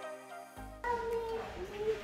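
Background music stops about half a second in; then a small child's high, wordless voice, wavering up and down in pitch.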